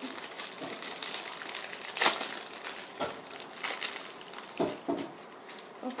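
Candy packaging crinkling and rustling as it is torn open by hand, with a louder crackle about two seconds in.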